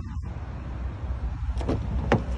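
Low rumble of wind on a phone microphone as it is carried along a parked car, with one sharp click near the end.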